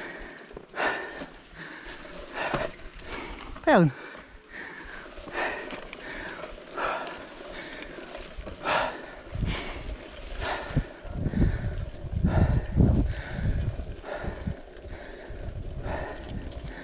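Mountain biker breathing hard while riding, with a sharp exhale about once a second. Just before four seconds in comes a brief, loud squeak that falls steeply in pitch. From about nine seconds in, a low rumble of tyres and wind on the rough trail builds.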